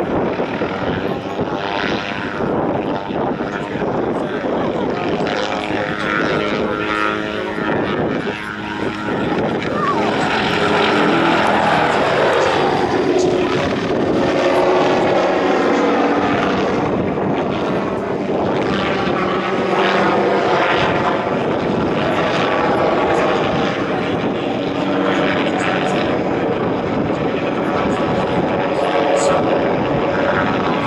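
MD 500 light helicopter flying an aerobatic display: its turbine and rotor run loud and steady. The sound swells about ten seconds in and shifts in pitch as the helicopter climbs and passes overhead.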